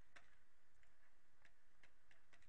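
Faint, irregular ticks of a pen stylus tapping and dragging on a tablet while handwriting, over quiet room tone.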